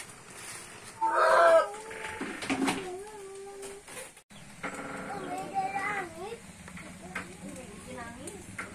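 A rooster crowing, loudest about a second in, with another long wavering call around five to six seconds in.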